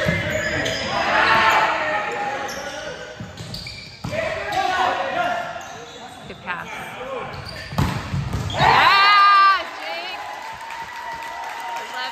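Volleyball rally in a gym hall: the ball knocked back and forth amid players' and spectators' calls. About eight seconds in comes a sharp hit, then a loud shouted cheer, the loudest sound, as the point ends.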